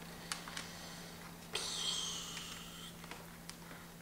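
Faint plastic clicks and a soft scraping rustle as a ThinkPad T61 laptop battery is pushed and seated into its bay.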